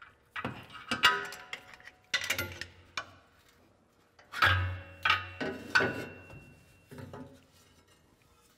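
Metal exhaust tailpipe knocking and clanking as it is pried off its rubber hanger isolator and worked loose: about eight irregular knocks, several of them leaving a ringing tone.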